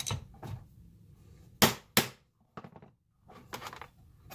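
A screwdriver and small salvaged metal parts handled on a wooden workbench: a click and a couple of light knocks, then two loud, sharp knocks about half a second apart in the middle, and light clattering near the end.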